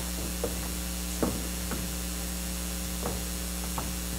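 Steady electrical hum and hiss from a church sound system, the sign of a sound-system malfunction. A few scattered soft knocks of equipment handling come through.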